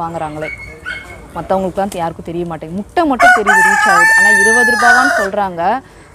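A flock of Kadaknath (black-meat) chickens clucking in short repeated calls, then a rooster crows once about three seconds in, one long call of about two seconds that is the loudest sound.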